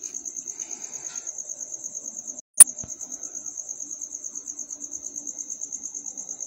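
An insect, cricket-like, chirping in a steady high trill of about ten pulses a second, which breaks off briefly about two and a half seconds in, just before a single sharp click.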